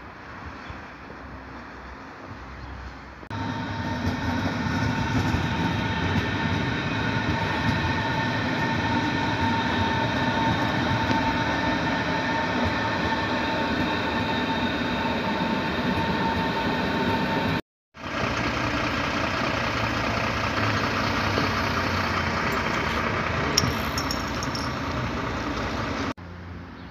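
Electric S-Bahn train running along the track, a steady loud rumble with a high whine. It cuts in abruptly about three seconds in and drops out for a moment near the two-thirds mark.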